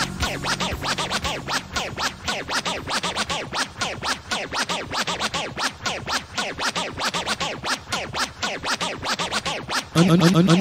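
Turntable scratching on a vinyl record: a rapid run of scratches sweeping up and down in pitch, several a second, over a thinned-out music bed with the bass dropped away.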